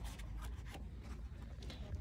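Faint rubbing and a few light clicks of a gloved hand handling the wires and plastic connector of a car radiator fan assembly. The fan motor is not running.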